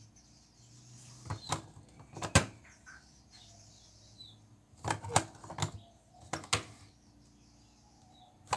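Sharp plastic clicks and knocks from a hand on the handle of a closed electric sandwich maker that is heating a sheet of EVA foam: a few scattered ones, the sharpest about two and a half seconds in, then a cluster about halfway through and two more soon after.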